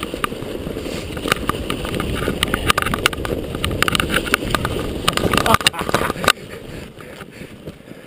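Mountain bike rattling and knocking over roots and rock on a snow-covered trail, tyres rolling through fresh, loose snow, with wind on the microphone. The clatter stops abruptly about six seconds in, leaving a quieter rush.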